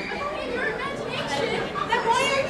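Quiet, overlapping chatter of voices in a large hall, well below the level of the speech and screaming around it.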